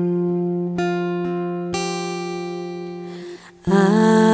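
Acoustic guitar music in a slow ballad: chords plucked about once a second, each ringing out and fading. After a brief dip, the music comes back louder near the end.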